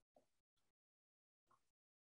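Near silence: a pause in a webinar recording, with only a few faint breath-like specks.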